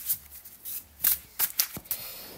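A deck of tarot cards being shuffled by hand, a quick string of short, crisp card snaps and slides, several each second.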